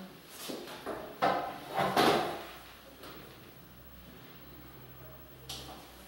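Knocks and clunks of an ophthalmic examination instrument being moved and adjusted at the patient's head. The loudest knock comes about two seconds in. After it there is a faint low hum, and a single click comes near the end.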